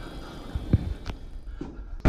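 Restroom stall door being opened: a few dull knocks over a low rumble.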